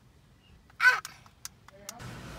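One short, harsh vocal call about a second in, falling in pitch, followed by a few light clicks.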